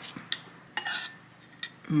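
A metal fork and spoon clinking and scraping on a ceramic plate while scooping saucy fish onto rice: a few light clicks and a short scrape about a second in.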